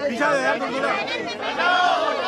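Chatter: several people talking at once in a crowd, their voices overlapping so that no single speaker stands out.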